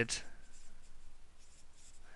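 Marker pen writing on paper: a soft, uneven scratching of the tip across the sheet.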